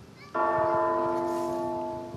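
A bell struck once about a third of a second in, its several tones ringing on and slowly fading.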